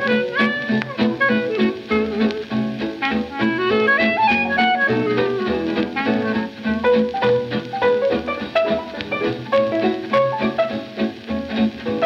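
Instrumental swing jazz played from a 1940 78 rpm shellac record by a quintet of clarinet, piano, guitar, double bass and drums, with no singing in this stretch. Melody lines rise and fall over a steady beat.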